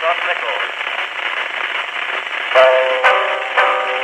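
An Edison wax cylinder record playing on an Edison Home Phonograph: the recorded spoken announcement ends in the first moment, a second or two of hissing surface noise follows, and about two and a half seconds in a solo banjo starts a ragtime tune with sharp plucked notes. The sound is thin and narrow, with no bass and no treble, as on an acoustic recording of 1902.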